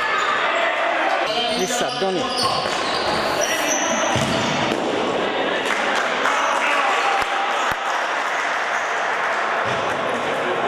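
Indoor futsal play in an echoing sports hall: the ball being kicked and bouncing on the wooden floor, with players shouting, and a couple of sharp thuds about seven seconds in.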